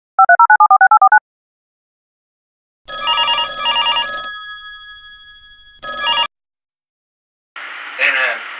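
Electronic telephone ring: a fast warbling trill alternating between two tones for about a second. Then a bright electronic chime of several tones, pulsing twice and ringing out as it fades, with a short burst of the same chime a few seconds later.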